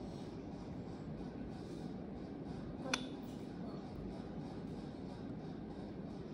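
Quiet, steady room noise with one sharp click about halfway through.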